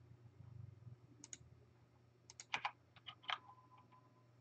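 Faint clicks of a computer keyboard and mouse: a pair about a second in, then several more between two and three and a half seconds.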